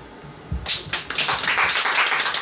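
An audience applauding, starting about half a second in and running on as dense, steady clapping.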